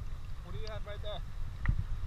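Low, choppy rumble of wind and sea water buffeting a camera microphone at the water's surface, with a short spoken word a little before the middle.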